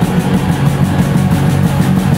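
Rock band playing live and loud: heavy guitars and bass over drums, a dense, continuous wall of sound.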